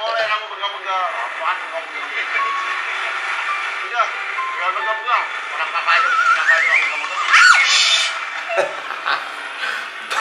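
Voices mixed with background music, with a high wavering voice-like line that rises in pitch about six to seven seconds in.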